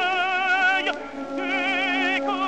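Operatic tenor singing a French aria with strong vibrato over accompaniment, on an early acoustic disc recording from 1906. He holds a note, breaks off a little under a second in, and starts a new phrase shortly after.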